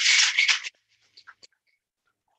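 Ice rattling hard inside a cocktail shaker as it is shaken, loud for under a second and then cutting off suddenly to a few faint scattered ticks.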